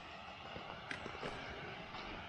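Glacial meltwater stream running steadily, an even rushing noise, with a few faint taps about a second in.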